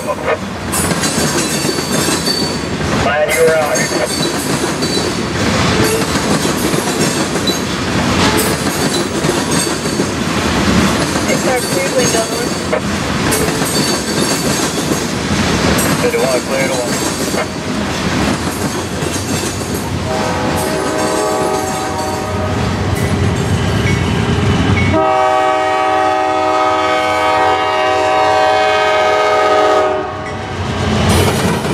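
Freight train of hopper cars rolling past, a steady rumble and clatter of wheels on rail. About 25 seconds in, the rumble gives way abruptly to a locomotive air horn sounding a held multi-note chord.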